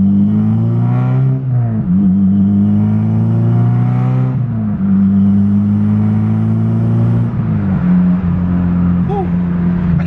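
Honda Civic Si's 2.4-litre four-cylinder engine, heard from inside the cabin, pulling hard under acceleration. It is shifted up through the manual gearbox three times, at about two, five and eight seconds in: each time the engine note climbs, drops sharply at the shift, then rises or holds again.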